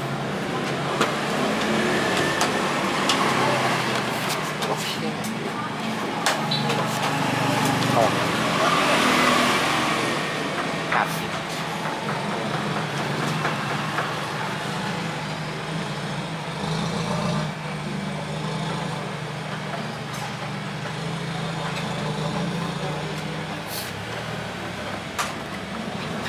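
A steady low vehicle hum in the background, with scattered sharp clicks and knocks from plastic motorcycle fairing panels being handled and fitted.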